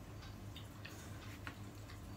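Faint scattered clicks and crackles of hands peeling and picking apart seafood shells on a plastic-covered table, about half a dozen small sounds in two seconds, over a steady low hum.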